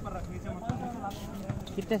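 Players' voices calling out across an outdoor basketball court, with a couple of soft thuds on the concrete.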